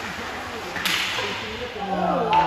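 Ice hockey game sounds in a rink: a single sharp crack of an impact just under a second in, over faint players' voices and steady rink noise.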